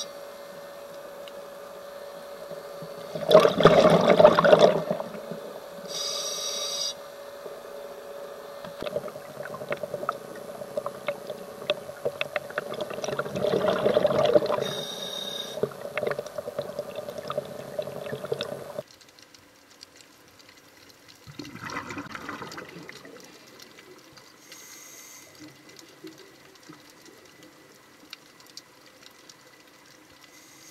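Underwater sound of a scuba diver's regulator: three rushes of exhaled air bubbles, the loudest about four seconds in, with shorter hisses between them, over a steady hum and faint crackle. The background turns quieter about two-thirds of the way through.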